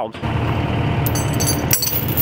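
Diesel engine of a Kubota tracked skid steer running close by, a steady low rumble with a high thin whine joining about a second in.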